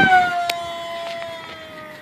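EFX Racer electric RC plane's motor and propeller whining in a fast pass: loudest at the start, then the pitch falls steadily as it fades into the distance. It is flown at low throttle on a 6S battery that is probably getting low. A single sharp click sounds about half a second in.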